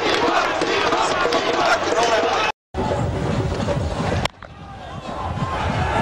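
Cricket stadium crowd noise, a dense mix of many voices, broken by abrupt edit cuts: a brief total dropout about two and a half seconds in, and a sharp click a little after four seconds, after which the crowd sound fades back up.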